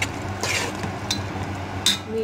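Metal spoon stirring a thick onion masala in a large aluminium pot, scraping and clinking against the pot a few times, with the loudest clink near the end. A steady low hum runs underneath.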